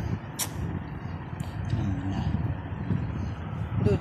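A domestic cat meowing: a faint short meow about halfway through, then a loud meow beginning right at the end. A steady low rumble runs underneath, with two sharp clicks in the first second and a half.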